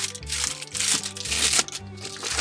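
Reflectix foil-faced bubble insulation crinkling in short bursts as it is handled and pressed into a window frame, over background music with a steady bass line.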